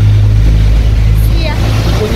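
Steady low rumble of street traffic, a motor vehicle engine running close by.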